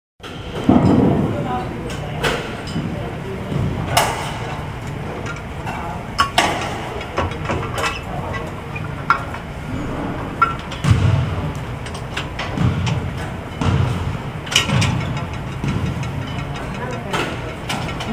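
Gym room sound: indistinct voices with a scattering of sharp clicks and knocks at irregular intervals.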